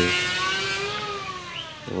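A motor vehicle's engine passing by, its pitch rising and then falling as it fades away.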